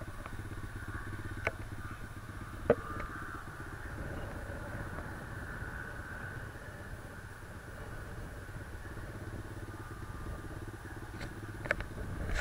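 Small dirt bike engine idling steadily: a low, even hum with no revving.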